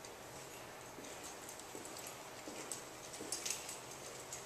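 Footsteps on a hard floor in a large, echoing room, a few sharp heel clicks a second, loudest near the end as the walker passes close.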